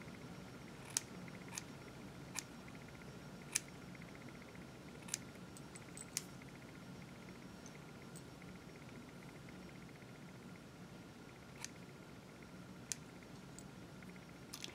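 Hair-cutting scissors snipping wig bangs: about eight faint, sharp snips at irregular intervals, most in the first six seconds and two more near the end, over a faint steady hum.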